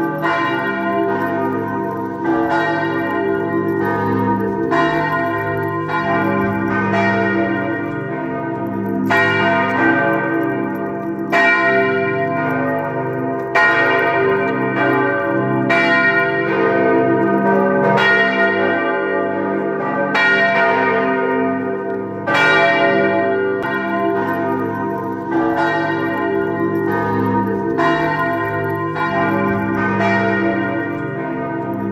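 Large church bells ringing in a full peal, several bells striking one after another about once a second, their ringing overlapping over a steady deep hum. These are the bells of St. Peter's Basilica, heard from close by on its roof.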